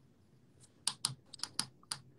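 Typing on a computer keyboard: a quick run of about eight sharp keystrokes in the second half.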